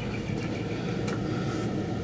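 Steady low rumble and hiss of background noise, with a couple of faint taps from the acrylic drum shell being handled over the camera.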